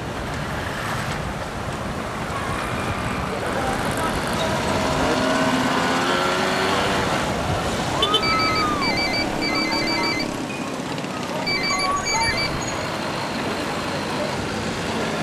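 Street traffic noise with distant voices. From about eight seconds in, a few seconds of quick electronic beeps come in short groups.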